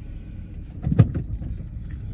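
A car's engine running, heard from inside the cabin as a low, steady sound, with a short thump about a second in.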